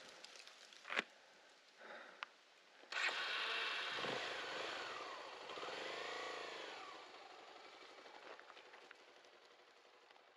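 A motor vehicle engine comes in suddenly about three seconds in, its pitch rising and then falling over a few seconds before it settles to a fainter steady hum.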